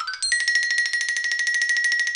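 Marimba: a fast upward run ends about a quarter second in on a high bar, which is then played as a rapid, even tremolo on that one high note.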